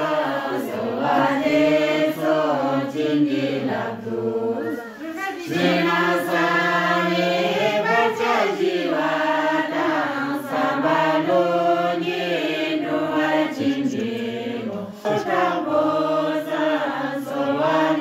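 A group of villagers chanting a prayer together in unison, in long held phrases with two brief pauses for breath.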